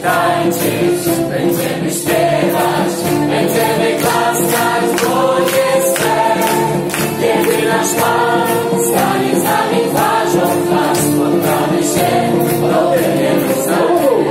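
Live band performing an upbeat Christian worship song with a steady beat, many voices singing together like a choir, the crowd joining in.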